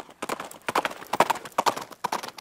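Horse hooves clip-clopping, a quick, uneven run of several hoofbeats a second.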